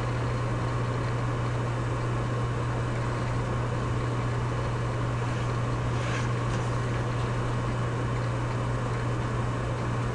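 Steady low hum with an even hiss beneath it: the background noise of the recording, with no other sound apart from a faint short tick about six seconds in.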